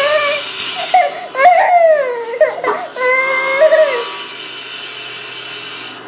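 Toddler crying and whining in angry protest, in three rising and falling wails over the first four seconds.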